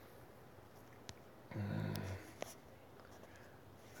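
Mostly quiet room tone, broken about one and a half seconds in by a brief low voiced sound, like a murmured "hmm". A couple of faint clicks come before and after it.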